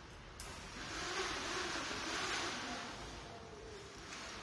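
A window blind being drawn: a sliding, rushing sound that starts abruptly about half a second in, swells, then fades toward the end.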